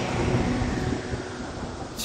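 Steady hiss of heavy rain, with the last notes of the instrumental intro dying away beneath it. It grows a little quieter toward the end.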